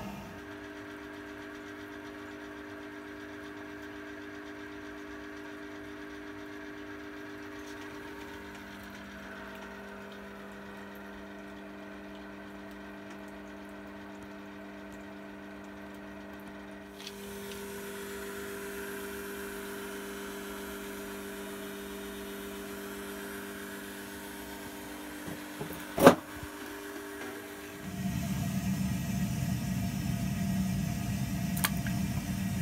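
Steady electric hum of a brewing pump motor, a set of fixed tones that shift a little a couple of times. A single sharp click comes near the end, followed by louder rushing noise.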